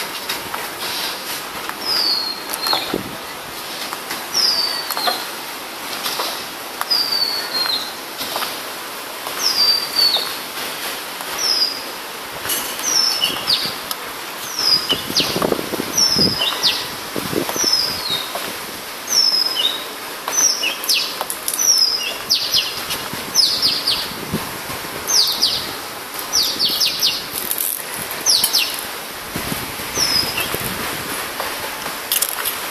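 A bird calling over and over: short high chirps that slide downward, one every second or two, coming faster and closer together in the second half.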